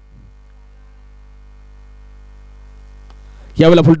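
Steady low electrical hum in the commentary audio feed, the kind of mains hum a sound system picks up. Near the end a commentator's voice comes in loudly over it.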